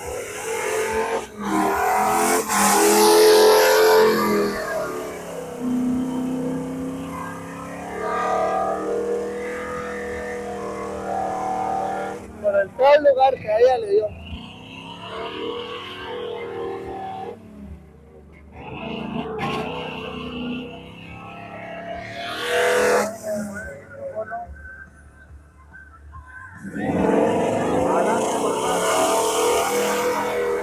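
Off-road 4x4 truck engine revving hard in surges as it churns through deep mud, with voices and music mixed in behind.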